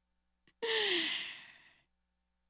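A woman's long breathy sigh into a handheld microphone, starting about half a second in, its pitch falling as it fades over about a second.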